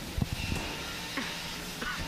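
Two 3 lb combat robots colliding: a quick cluster of sharp thumps and knocks just after the start, as one robot is knocked tumbling. Steady background music runs throughout.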